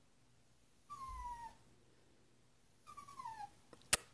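A puppy whining twice, each a thin, falling whine about half a second long. A sharp click just before the end is the loudest sound.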